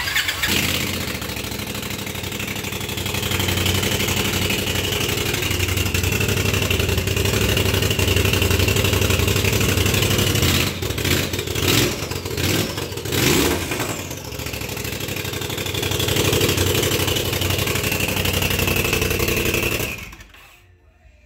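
Straight-piped Polaris RZR Turbo S engine starting and running, with a high whine that slowly falls in pitch. Several quick throttle blips come between about ten and fourteen seconds in.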